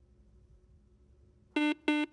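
Quiz-show buzzer system's buzz-in signal: after a silent pause, two short electronic beeps about a third of a second apart near the end, as a contestant buzzes in to answer.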